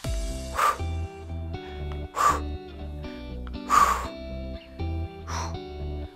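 Background workout music with a steady bass beat. Over it a woman breathes out hard four times, about every second and a half, with the effort of a leg-raise exercise.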